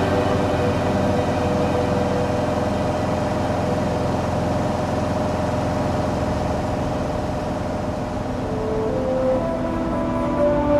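Steady drone of a light single-engine plane's engine and airflow heard inside the cabin, under soft background music that brings in new notes near the end.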